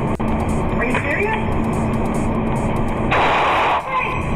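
Hissy, low-fidelity security-camera audio of a store robbery: faint, distorted voices under a steady noise, with a louder burst of noise about three seconds in.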